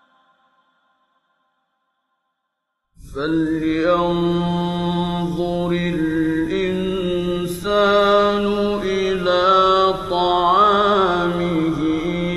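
Silence for about three seconds, then a male Quran reciter starts a new phrase in the melodic mujawwad style, with long held notes and wavering ornaments, on an old 1950s radio recording.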